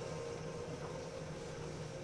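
Metal lathe running steadily, its chuck turning a steel bar, a constant low mechanical hum.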